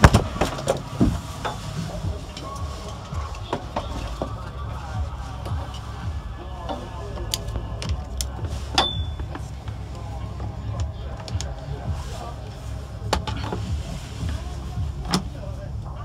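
Scattered clicks and knocks of a portable jump starter's clamps and cables being handled and clipped onto a car battery's terminal, over a steady low rumble.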